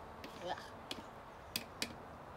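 Three sharp taps, the first about a second in and the other two close together near the end, from a container knocked against the top of the compost tube as food scraps are emptied into it.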